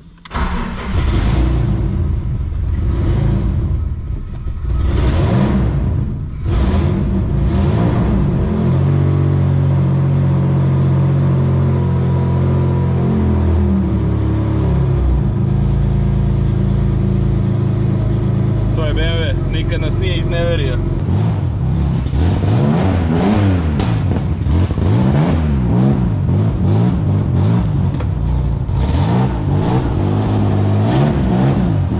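Turbocharged BMW M50 straight-six in an E46 Compact, heard from the cabin. It starts just after the beginning and is blipped sharply several times, then holds a steady idle. In the second half it is revved up and down repeatedly.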